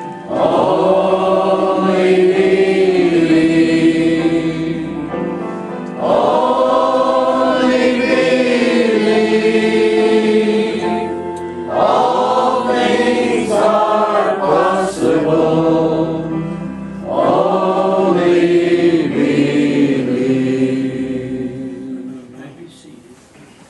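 Congregation singing together, in four long phrases of about five seconds each, fading away near the end.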